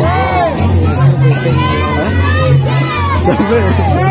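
A crowd of villagers and children calling and shouting over rhythmic percussion music with a steady beat of about four crisp strokes a second.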